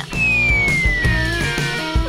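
A cartoon-style whistle sound effect, one long pure tone gliding steadily downward, over background music.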